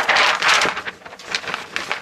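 Large paper shooting target rustling as it is handled and brought up close, loudest in the first half second, then softer rustles.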